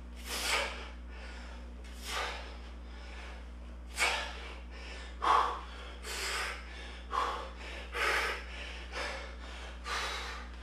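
A man breathing hard with exertion while doing dumbbell squats, short forceful breaths about once a second.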